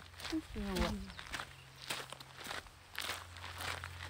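Footsteps on a dry dirt trail, a scatter of irregular steps, with a faint voice briefly in the first second.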